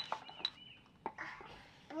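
Faint bird chirps, short high notes repeating here and there, with a few light sharp clicks, the strongest at the very start and another about half a second in.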